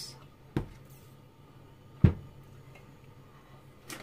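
Two light knocks about a second and a half apart as objects such as a plastic butter tub are set down on a kitchen counter, over a faint steady low hum.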